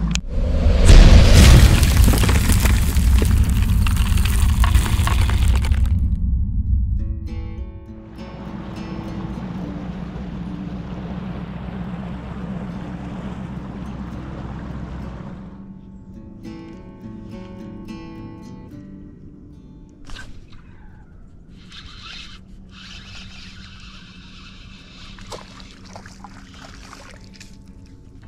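Background music throughout, under the rush of a boat running across the water. The rush is loud for the first six seconds and stops abruptly, then comes back softer until about fifteen seconds in.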